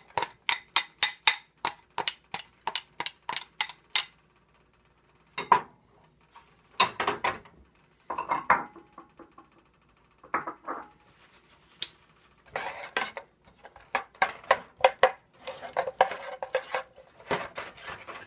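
Kitchen tongs knocking against a small pan to tap diced garlic out into a sauté pan: a fast run of sharp metallic clicks for about four seconds. After that come scattered clinks and scrapes of the tongs on pans as the onions and garlic are stirred.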